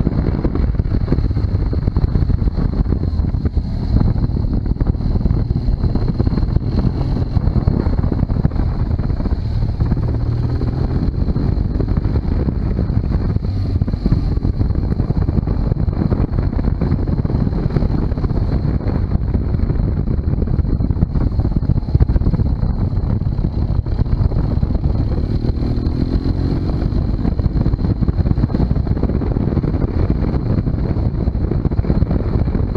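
BMW R1200GS boxer-twin engine running at road speed, mixed with heavy wind rumble on the microphone. A steady high whine sits above it throughout, and the engine note rises near the end as the bike accelerates.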